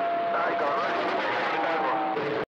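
CB radio receiver audio: a steady hiss of static with faint, garbled voices breaking through. A thin steady whistle of a carrier tone comes in near the end.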